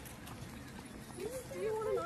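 Background voices of people nearby with scattered faint clicks. From a little past the middle, a high, wavering voice comes in and becomes the loudest sound.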